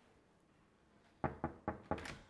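Four quick knocks on a wooden room door, coming in a rapid run after about a second of quiet.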